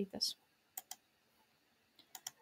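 Two quick computer clicks, about a tenth of a second apart, from the presenter's computer as the presentation is advanced to the next slide.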